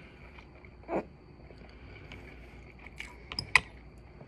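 A metal fork clicking a few times against a glass bowl while picking up noodles, with a sharp clink near the end.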